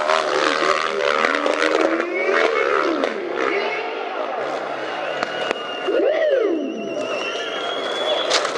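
Dirt bike engines revving on a steep hill climb, their pitch rising and falling, with one sharp rev up and back down about six seconds in.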